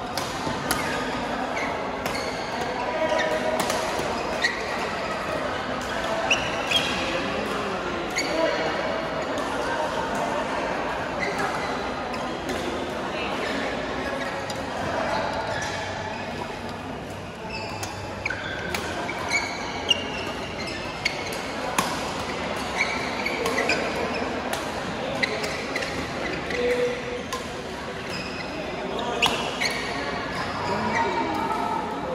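Badminton rackets striking a shuttlecock during rallies, sharp irregular hits, with court shoes squeaking on the floor, over a steady babble of many voices echoing in a large sports hall.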